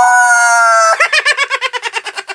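A high-pitched human scream held for about a second, then a burst of rapid laughter.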